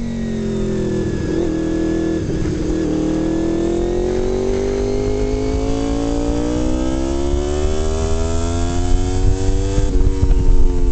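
Sport-touring motorcycle engine under way: the note dips at first and wavers twice, then climbs steadily for about seven seconds as the bike accelerates, and falls off near the end.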